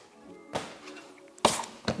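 A plastic dough scraper knocking down onto a stainless-steel bench as bread-roll dough is cut: three sharp knocks, one about half a second in and two close together near the end, over faint background music.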